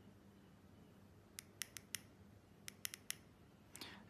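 Faint clicks of the small plastic push buttons on an e-bike display's handlebar control pad being pressed, about ten in three quick clusters, as the display is switched into its menu.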